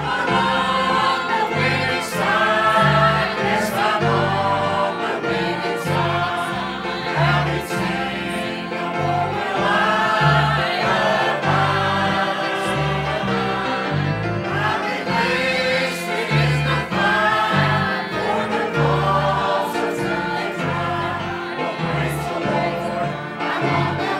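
Mixed church choir of men's and women's voices singing a gospel hymn, with sustained bass notes changing about every second beneath the voices.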